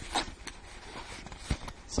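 Hands rummaging in a cardboard shipping box: packaging rustling, with a few sharp knocks and taps, the loudest about one and a half seconds in.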